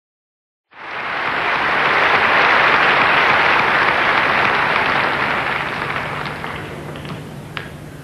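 Audience applause that starts abruptly about a second in, holds full for a few seconds, then slowly dies away, with a few single claps standing out near the end.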